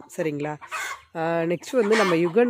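A person talking in short phrases, with chickens clucking.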